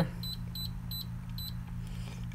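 Lowrance fish finder key beeps: several short, high beeps in quick, uneven succession, one for each button press while scrolling down the settings menu.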